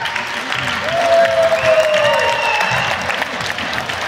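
Audience applauding over ballroom dance music, with a few long held notes in the music.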